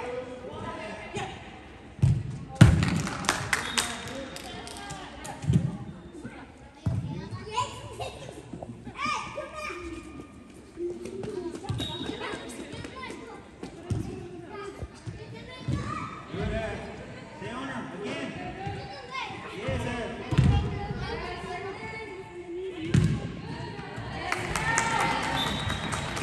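Indoor soccer ball thudding at irregular intervals as it is kicked and knocked off the arena boards, several times, the loudest a couple of seconds in. Players' voices and shouts run throughout.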